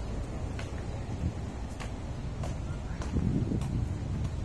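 Footsteps on a paved walkway at a steady walking pace, about one step every 0.6 s, over a steady low rumble of outdoor wind and traffic.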